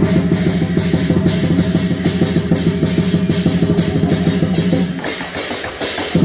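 Lion dance drum beating a fast, dense rhythm with cymbals clashing over it. The beating thins out about five seconds in and picks up again at the end.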